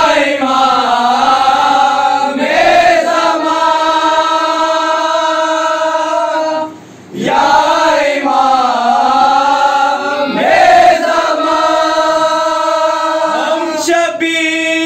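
A group of young men chanting a noha (a Shia mourning lament) in unison without accompaniment, led from a book. The lines are drawn out in long held, gliding notes, with a short breath pause about seven seconds in.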